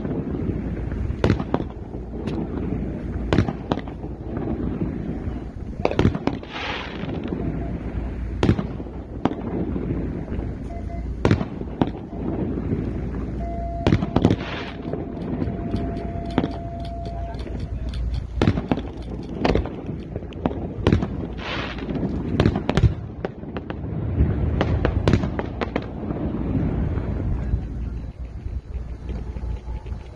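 Fireworks and firecrackers going off in a long, irregular string of sharp bangs, at times several a second, with voices beneath.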